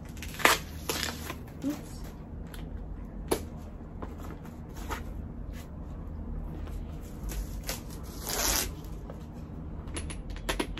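Rustling and crinkling of a handbag's packaging as the bag is drawn out of its cloth dust bag and the wrapping on its top handle is handled, with a few sharp clicks and a longer rustle near the end.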